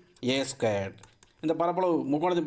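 A man speaking in Tamil in short phrases, with a few light clicks in the pause between them.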